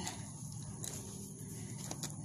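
Faint clicks from a hand working a tight latch on a pen door, twice, over low background noise.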